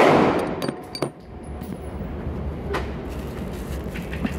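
Echo of a 9mm pistol shot dying away in an indoor range, followed by a few light metallic clicks and a fainter gunshot nearly three seconds in.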